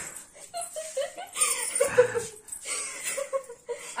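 Two young women laughing and giggling in short, broken fits while play-wrestling.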